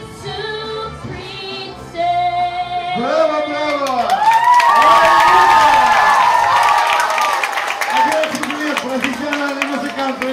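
A child's song over a backing track ends about three seconds in, and audience applause and cheering follow, loudest in the middle. A man's voice starts speaking over the last of the clapping.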